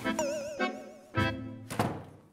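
Comic sound-effect music added in editing: a knock, then a wavering, warbling tone for about a second, then a low thud and a sharp hit near the end.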